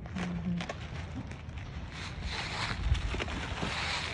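Plastic wrap and a plastic bag crinkling and rustling in irregular bursts as a wrapped foam food container is unwrapped, over a steady low rumble.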